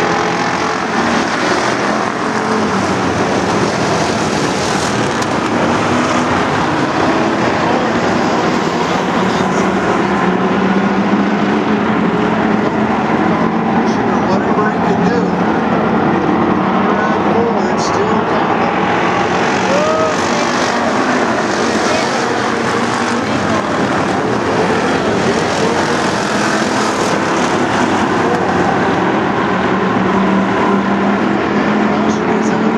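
A pack of bomber-class stock cars racing on a short oval track, their engines making a loud, steady drone that holds without a break.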